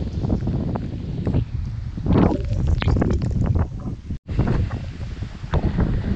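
Strong wind buffeting a GoPro's microphone: a gusty, uneven low rumble with scuffs of the camera being handled. The sound cuts out for an instant about four seconds in.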